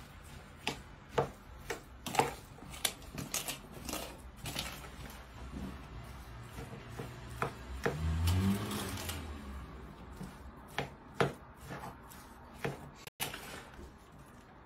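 A fork knocking and scraping against a plastic bowl while crumbly cottage cheese is mashed and stirred by hand, in irregular clicks of one to three a second.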